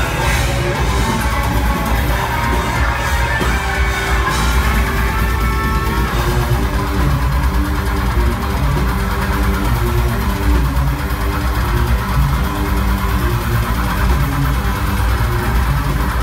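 Technical deathcore band playing live at full volume: distorted electric guitars, bass and drums. From about six seconds in the guitars play a riff of short repeated notes.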